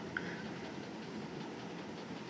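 Steady low background noise of a room, an even hiss and hum with no distinct event, in a pause between speech.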